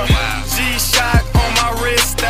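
Hip-hop track playing: a beat of deep kick drums that drop in pitch, with crisp hi-hats over it.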